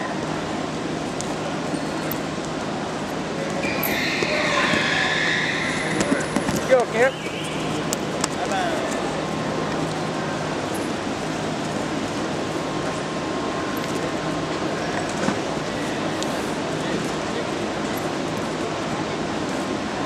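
Indistinct voices and chatter echoing in a large indoor gym over a steady low hum, with a few louder voices about four to seven seconds in.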